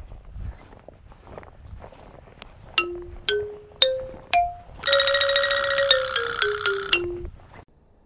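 Footsteps on grass, then an edited comic sound effect: four sharp plinked notes rising in pitch about half a second apart, followed by a held note that steps down in a quick falling run and stops about seven seconds in.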